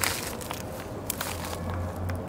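Outdoor background: a low steady rumble with a few light clicks and scuffs, the sharpest click right at the start and another about a second in.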